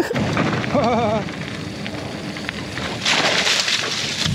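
Wind buffeting a helmet-mounted action camera's microphone as a mountain bike rolls down a dirt forest trail, with tyre rumble underneath. A brief laugh about a second in, and louder hiss near the end.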